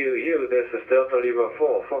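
A man's voice on a DMR amateur radio transmission, decoded and played through the Whistler TRX-2 scanner's speaker. It has a narrow, thin radio sound and ends on letters spoken in the phonetic alphabet ("Fox").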